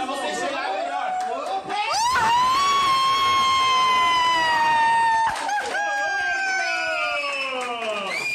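A group of young people screaming in excitement over chatter. About two seconds in, one long high scream rises sharply and then sags slowly in pitch for about three seconds; a second, lower scream follows, also falling.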